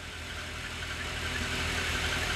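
Steady low machine hum, slowly growing a little louder.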